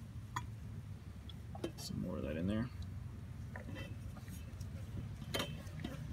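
A few faint, sharp metallic clicks and clinks of tools and parts being handled, over a steady low hum. A voice mutters briefly about two seconds in.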